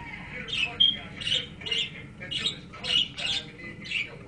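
Pet budgerigars (parakeets) chattering: a run of short, high, harsh calls, about two to three a second.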